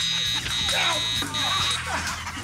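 Electric fencing scoring machine sounding its high, steady buzzer tone for a registered touch, broken twice briefly and stopping shortly before the end. Voices and laughter over background music underneath.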